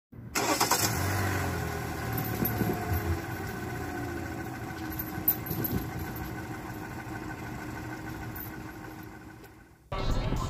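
An engine starting with a sudden loud burst, then running steadily and slowly fading, cutting off just before the end.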